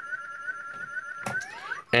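Circuit-bent Playskool toy sound looping as a fast stutter: one short rising electronic chirp retriggered over and over, several times a second, by a 40106 Schmitt-trigger oscillator. Near the end comes a sharp knock, then a few slower rising glides.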